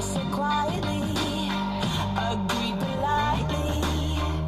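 Pop song with a singer and a steady beat.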